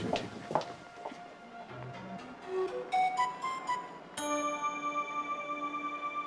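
Background score music: sparse single notes with bell- and mallet-like tones, then a held chord from about four seconds in.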